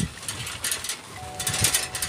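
Rustling, scraping and knocking of a handheld phone's microphone being carried while walking, with irregular thumps of footsteps. A faint steady tone comes in about a second in.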